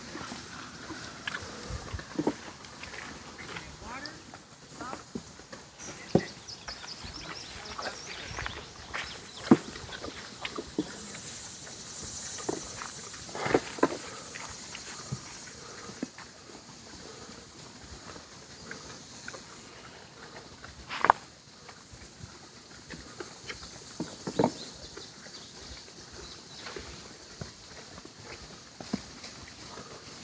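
Quiet outdoor ambience with scattered soft knocks and rustles of footsteps in straw, a few of them sharper and louder.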